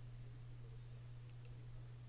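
Two computer mouse clicks about a fifth of a second apart, a little past halfway through, over a faint steady low hum.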